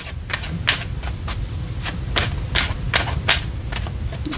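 A tarot deck being shuffled by hand: a quick run of card slaps and flicks, about three or four a second, over a low steady hum.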